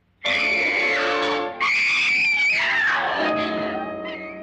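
A woman screams twice, each long high scream sliding down in pitch at its end, over a loud burst of dramatic film music. After the second scream the music carries on, lower and steadier.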